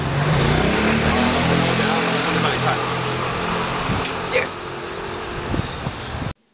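Street noise: a steady traffic hiss with a motor vehicle's engine running, its pitch rising during the first second or so. A short high-pitched sound comes about four and a half seconds in.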